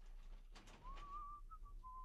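A rolling metal scaffold tower being pushed across a stage: a few faint knocks, then a thin, wavering squeak from its wheels that breaks into short pieces near the end.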